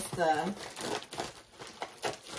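Packaging crinkling and rustling in irregular crackles as a cross-stitch kit in a black bag is pulled out and handled.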